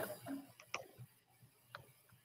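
Faint clicks: a sharper one right at the start, then three or four fainter ones at irregular spacing.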